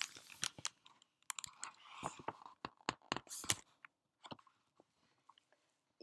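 Close handling noise right at the microphone: a busy run of short clicks and rustles for about three and a half seconds, then a few sparse clicks before it falls quiet.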